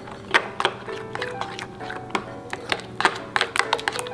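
Metal spoon stirring a thick chili-paste sauce in a glass bowl, clicking and clinking against the glass many times at an irregular pace.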